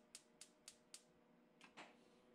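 Gas stove burner being lit: the spark igniter ticks faintly, about four clicks a second, pauses, then gives two more clicks near the end.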